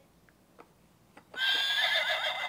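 A quiet pause with a few faint clicks, then a horse whinnying, starting about a second and a half in.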